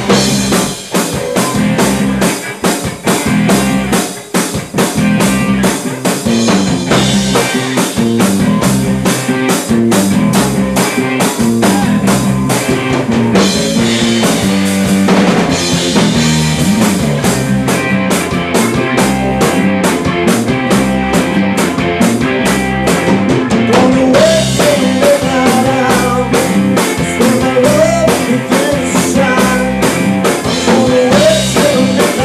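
Live rock band playing: a drum kit keeping a steady beat under bass guitar and two guitars. A wavering higher line comes in near the end.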